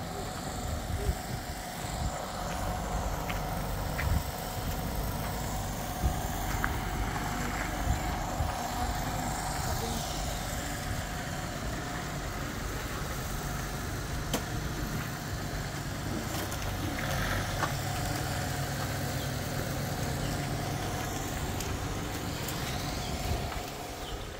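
A machine running steadily, a low engine-like hum with a constant held tone, with a few short knocks over it.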